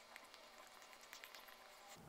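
Near silence: room tone with a few faint, soft ticks.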